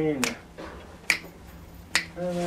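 A man's singing voice holding a note that ends shortly in, over finger snaps keeping time: three snaps a little under a second apart.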